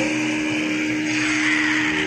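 Distorted electric guitar noise and feedback held after the drums and bass cut off: a steady, hissing wash of amplifier distortion with a few sustained ringing tones, as a hardcore punk track rings out.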